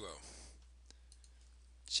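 A single faint computer mouse click about a second in, from the click on a web page's button. The tail of a man's voice is heard at the start and the start of another word at the end.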